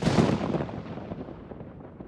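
A cinematic boom sound effect for an animated logo intro: one sudden deep hit, its rumble and reverberation fading slowly away.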